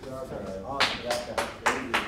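Voices, then about five sharp hand claps starting about a second in, roughly three a second.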